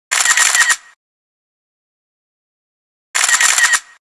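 Camera shutter sound effect, played twice about three seconds apart: each a quick run of clicks lasting under a second.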